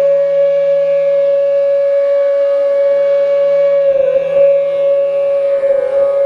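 A flute holds one long, steady note over a low sustained drone. The note wavers briefly about four seconds in and again near the end.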